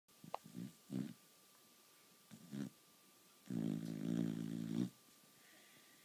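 A sleeping beagle snoring: a few short snores in the first three seconds, then a longer, louder pitched snore lasting over a second about three and a half seconds in.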